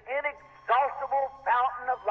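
Speech only: a voice talking.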